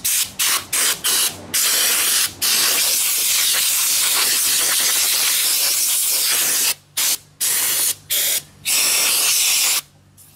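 Compressed-air blow gun blasting dirt and debris out of the fuel pump access area: several short blasts, then one long steady blast of about five seconds, then a few more short blasts before it cuts off.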